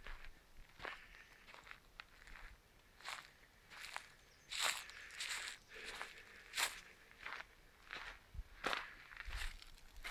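Faint footsteps on dry leaves and forest-floor litter, irregular steps about one or two a second.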